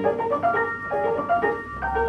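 Ampico reproducing grand piano playing from a perforated paper roll, with quick, shifting notes in the middle and upper register. A deep bass note comes in near the end.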